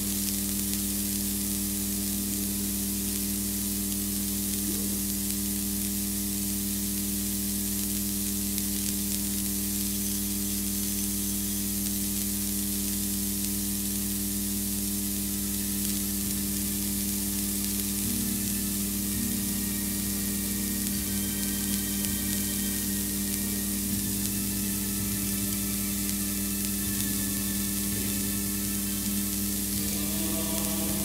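Steady electrical hum and hiss on the sound system: a constant low buzz of several tones over an even hiss, unchanging throughout.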